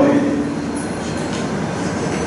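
A man's voice holds the end of a word briefly at the start, then a steady rushing background noise fills the pause.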